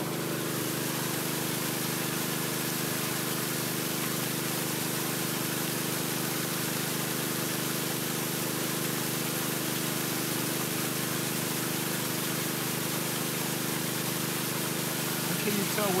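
Pool filter pump running steadily: a constant motor hum over a hiss of water.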